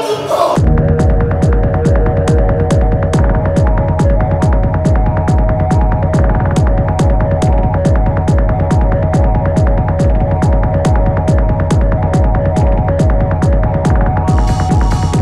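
Electronic stage music: a deep throbbing pulse of about two and a half beats a second, with a tick on each beat, under a held drone of steady tones.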